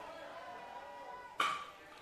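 A baseball bat strikes a pitched ball hard, one sharp crack with a short ring about one and a half seconds in. Faint crowd voices murmur in the background before it.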